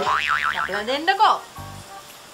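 A comic 'boing'-style sound effect: a springy tone that wobbles quickly up and down, then slides downward, over background music.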